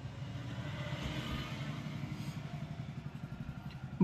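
Quiet, steady background noise of a motor vehicle engine running, with a fine, fast low pulsing.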